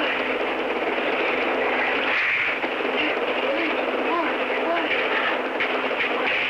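Recorded 911 telephone call: steady line hiss squeezed into a narrow phone band, with faint, indistinct voices in the background.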